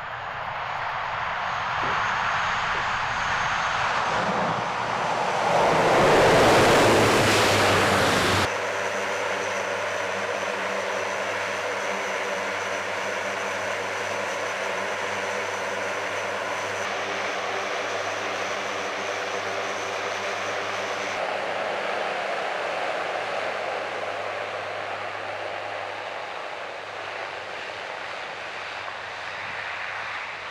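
Four-engine turboprop of a Lockheed C-130 Hercules transport: the engines and propellers swell loud as the aircraft comes in low to land. About eight seconds in the sound cuts abruptly to a steady propeller drone made of several even tones, which eases off slightly near the end.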